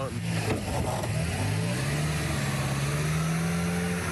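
A vehicle engine pulling under load on a snowy road, its pitch climbing steadily over a few seconds, as a stuck work van is towed free with a tow strap.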